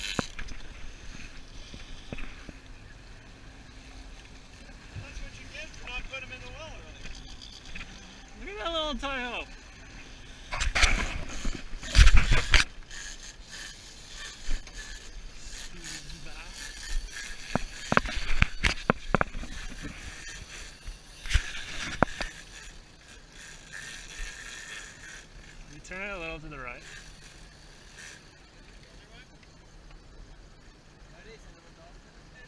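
Steady wind and water noise on an offshore fishing boat, with short calls from people aboard and several loud knocks and bumps against the boat about a third of the way in and again past the middle.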